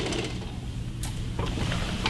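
Two faint knocks from a Cybex leg curl machine as legs are swung off its leg pad, over a steady low hum.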